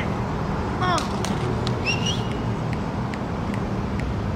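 Steady low outdoor rumble, with a few faint clicks and a short voice-like call about a second in.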